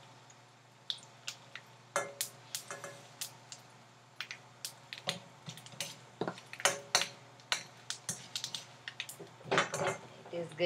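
Metal spatula clinking and scraping against a stainless steel pan in irregular sharp knocks, some with a short metallic ring, as a tempering of chana dal, urad dal and mustard seeds is stirred.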